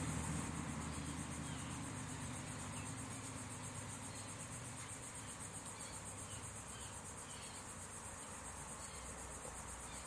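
Faint, steady, high-pitched background buzz at a low level, with a low hum fading out over the first couple of seconds. No distinct handling sound stands out.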